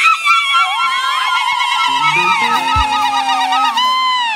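High voices holding long, shrill celebratory cries, like ululation, several overlapping and wavering in pitch in the middle. Low held musical notes come in about halfway, with a single low thump near the end.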